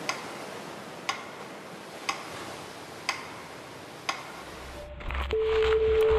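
Clock ticking, one sharp tick a second, over a steady hiss. Near the end a low rumble swells, the hiss cuts off and a steady held tone begins as music comes in.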